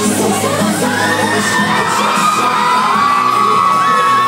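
Crowd of fans screaming and cheering over live pop music from the stage. From about a second in, a long, high scream is held over the crowd.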